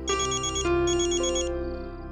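Phone ringtone: two short bursts of high, trilling ringing in the first second and a half, over sustained background music.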